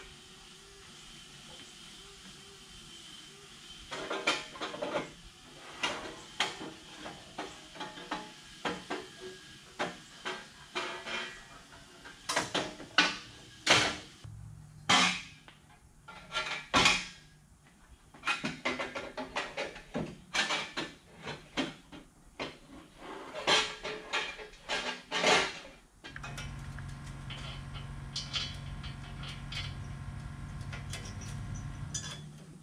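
Irregular metal clanks, knocks and rattles as long-tube exhaust headers are worked into place from under a lifted truck. Near the end the clatter gives way to a steady low hum.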